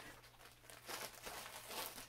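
Faint crinkling and rustling of plastic bags packed with yarn as they are rummaged through and picked up, in short irregular bursts.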